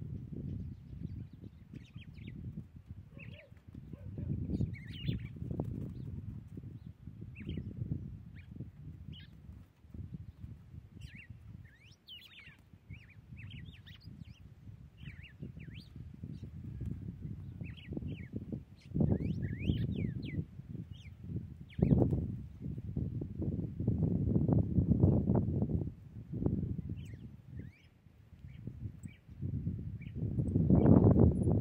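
Red-cowled cardinal singing: a run of short, quick chirping and whistled notes repeated through the whole stretch. Under it is a louder low rumble, strongest in the second half.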